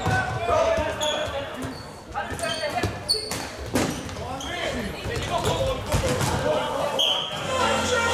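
Floorball play on an indoor court in a reverberant sports hall: players shouting, sharp clacks of sticks and the plastic ball, and shoes squeaking on the floor. A short high tone comes about seven seconds in, and music starts near the end.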